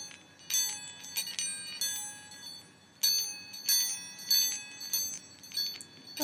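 Bells ringing in an uneven rhythm, about two strikes a second. Each strike sounds several high pitches at once and rings briefly before fading. The strikes grow louder about halfway through.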